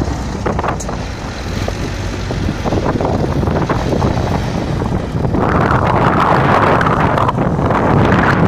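Diesel truck engines labour as a fire engine tows a stuck semi-trailer truck through deep snow, with wind buffeting the microphone. The noise grows louder about five seconds in.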